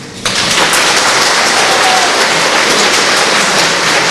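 Audience applauding: the applause breaks out just after the last piano notes die away and then carries on steadily.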